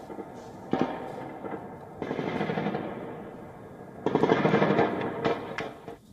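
Automatic gunfire in long rapid bursts: a sharp crack about a second in, then a long burst about two seconds in and a louder one about four seconds in.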